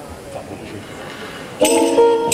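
Low stage room tone, then about one and a half seconds in the acoustic guitars come in loudly with a sustained chord and a jingling tambourine stroke as the blues number starts.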